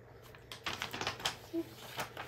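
A sheet of drawing paper being handled and turned over, giving a quick run of dry crackles and rustles that starts about half a second in.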